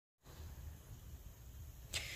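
Faint room tone with a steady low rumble, and a short whoosh just before the end.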